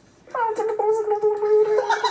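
A man doing a comic vocal impression of Pingu: one long held note that slides down at the start, then holds steady with a slight flutter.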